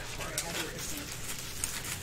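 Clear plastic bags around packaged flags crinkling in a few short bursts as they are handled.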